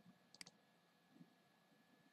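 A single quiet computer mouse click about half a second in, heard as a quick press-and-release tick against near silence.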